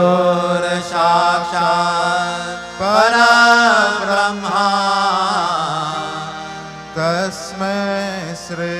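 A man singing a Sanskrit devotional chant (prayer verses) into a microphone: long held notes that bend and waver in pitch, in several phrases with short breaths between, over a steady low drone.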